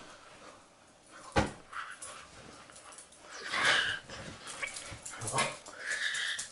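Dog-like whimpering cries, two longer ones in the second half, after a single sharp knock about one and a half seconds in.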